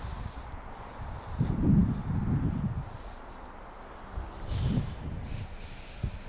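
Wind rumbling on the microphone in two gusts, a longer one about a second and a half in and a shorter one near five seconds, over a faint steady background.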